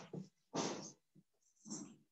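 A dog barking faintly in the background, about three barks roughly half a second apart.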